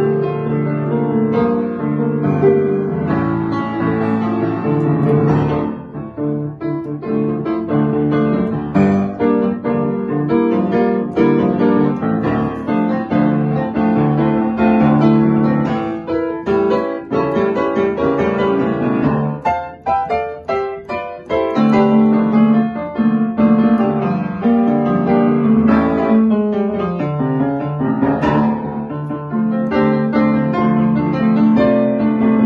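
Yamaha U2 upright piano being played: a continuous piece of chords and melody that thins out and softens for a moment about two-thirds of the way through, then comes back full.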